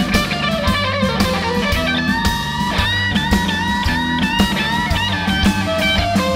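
Live band playing an instrumental section: a lead electric guitar plays bent, wavering notes over bass, drum kit and keyboard.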